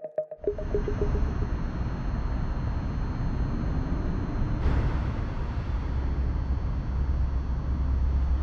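A synthesizer intro jingle cuts off about half a second in. Steady low outdoor rumble and hiss of city traffic and wind on the microphone follows, swelling briefly a little past halfway.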